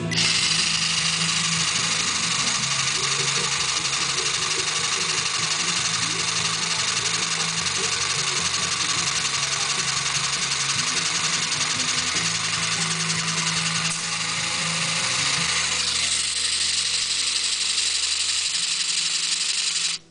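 LEGO Technic pneumatic compressor: an electric motor driving the pneumatic pump, running steadily with a dense mechanical whir. It starts suddenly as it is switched on, and its tone shifts a few seconds before the end.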